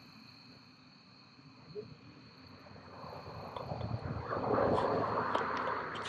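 Steady high-pitched chirring of insects in the evening. From about halfway through, a broad rushing noise with a low rumble swells up and fades, with a few short rustles near the end.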